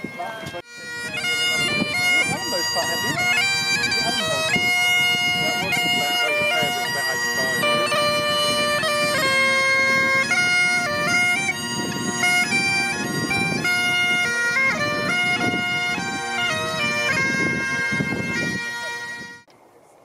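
Bagpipes playing a tune over steady drones, starting about a second in and stopping abruptly near the end.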